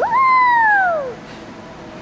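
Playground swing squeaking on its swing: one loud squeal that jumps up in pitch, then slides slowly down and fades after about a second.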